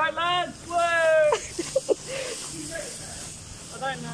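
Voices laughing and calling out in the first second and a half, over the steady hiss and low hum of an inflatable costume's battery-powered blower fan.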